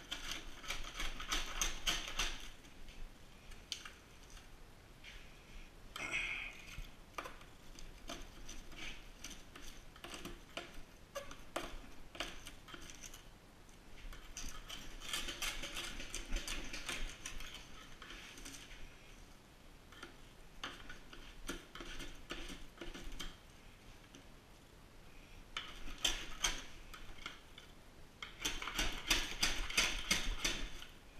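Old solar cells being scraped and pried out of a panel where they are set in resin: brittle scratching and clicking in several spells, densest near the start, in the middle and near the end.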